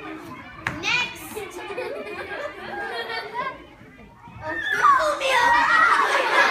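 Children's voices talking and calling out with indistinct words, with a single sharp click a little under a second in. The voices grow louder and busier, overlapping each other, about five seconds in.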